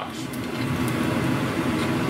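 Pork belly pieces deep-frying in oil at about 300°F, a steady sizzle of bubbling fat as the skins blister.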